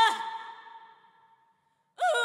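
A woman's solo Amazigh singing through a stage microphone: her held note ends just at the start with a quick downward drop, its echo fades away over about a second and a half, and the next sung phrase comes in sharply at the very end.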